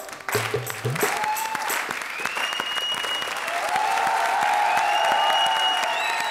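Audience applauding steadily right after the song ends, with the song's last beats in the first second and long held notes of background music over the clapping.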